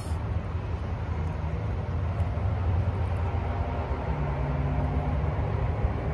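Steady low rumble of motor traffic, with a faint engine hum in the middle.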